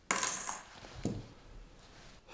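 Sheets of paper rustling and sliding on a wooden desk as they are put down and handled, with a soft knock about a second in.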